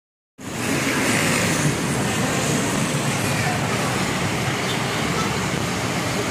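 Steady street traffic noise from cars and motor scooters passing along a busy road. It begins about half a second in.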